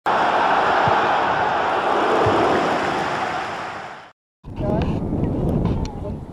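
A loud, steady rushing noise, an intro sound effect, fades out about four seconds in. After a brief silence, wind buffets the microphone outdoors and children's voices are heard faintly.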